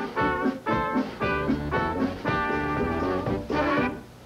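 A polka dance band of saxophone, trumpets and accordion playing the closing bars of a polka: short accented chords, a longer held chord in the middle, and a sudden stop at the very end as the tune finishes.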